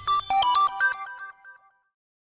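Short electronic music sting of quick, bright chiming notes in a rapid run, which rings out and fades away about one and a half seconds in.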